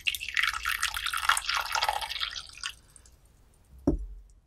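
Liquid poured in a splashing, dripping stream for about two and a half seconds, then a single low thump near the end.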